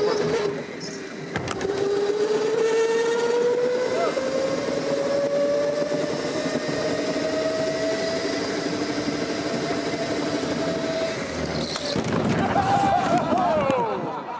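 Go-kart's motor whining, rising slowly and steadily in pitch as the kart picks up speed. Near the end the kart crashes into the tyre and barrier wall with a clattering bang.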